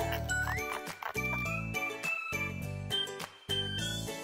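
Children's TV segment intro jingle: a bright, tinkling tune over a stepping bass line, with a rising swoop shortly after the start and another near the end.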